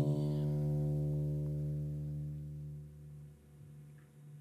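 Final chord of a song on acoustic guitar left ringing, fading away over about three seconds until only room tone is left.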